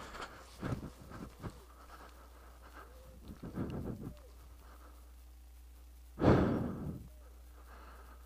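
A person breathing out heavily close to the microphone about six seconds in, with a softer breath about halfway through and a few light clicks of footsteps near the start.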